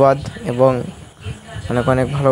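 A man's voice talking, with a short pause about halfway through.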